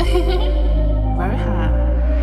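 Instrumental intro of a UK rap track: deep held bass notes under a sparse melody, the bass stepping to a new pitch near the end.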